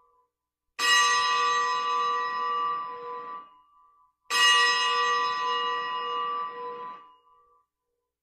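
A church bell struck at the elevation of the chalice during the consecration at Mass. Two single strokes about three and a half seconds apart, each ringing for about three seconds.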